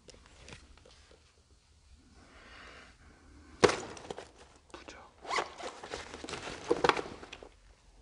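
Close, crackly rustling and clicking noises. There is a sharp burst about three and a half seconds in, then a run of quick rustles and clicks in the second half.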